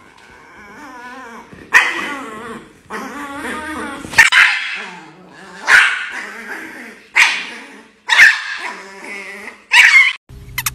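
A chihuahua growls steadily with a wavering pitch and breaks into sharp, loud barks about six times, every one to two seconds. It is worked up by a hand teasing it.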